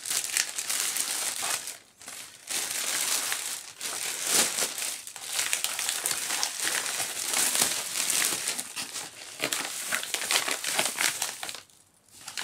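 Clear plastic bag crinkling and rustling as it is slit open with a small cutter and worked off a padded mailer, in steady handling with a short lull about two seconds in.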